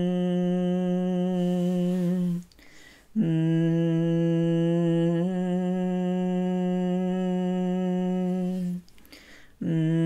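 A woman humming long, steady low notes with short breaths between them. The first hum ends about two and a half seconds in. The second holds for about five and a half seconds and steps up slightly in pitch partway through, and a third begins just before the end.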